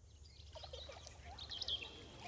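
Several birds chirping and calling with many short, quick notes, faint at first and growing louder, over a low steady hum of outdoor ambience.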